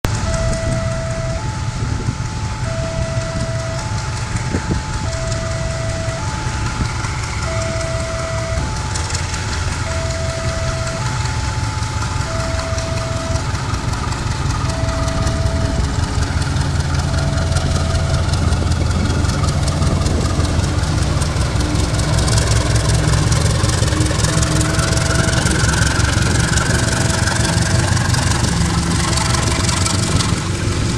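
Diesel locomotive engine running as it hauls a passenger train past, its low rumble growing louder in the second half. Over it, an electronic warning signal repeats a two-note tone about once a second, fading later on.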